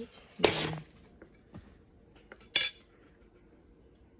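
A spoon clinking against a ceramic soup bowl as sour cream is spooned into borscht. There is a brief scraping noise about half a second in, and one sharp, ringing clink about two and a half seconds in.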